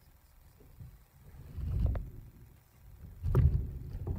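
Two bouts of low knocking and rustling, about a second and a half apart, each ending in a sharp click: a guinea pig moving about inside its plastic hideout on shredded-paper bedding.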